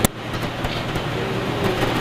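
Steady hum and hiss of the public-address system and hall noise between sentences. It opens with a single sharp click.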